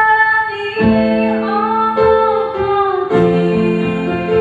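A woman sings long, held notes into a microphone, amplified over a live band's electronic keyboards.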